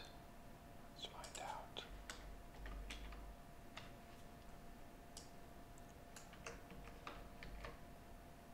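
Faint computer keyboard keystrokes and clicks, scattered and irregular, with a short soft murmur about a second in.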